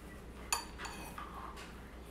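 Metal spoon clinking against a ceramic bowl as a thick sour cream and dill sauce starts to be stirred, with one sharp clink about half a second in and a few fainter clicks after it.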